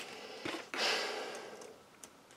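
A click of plastic model-kit parts, then a breathy exhale lasting about a second and fading out, a sigh of frustration over a piece fitted the wrong way round.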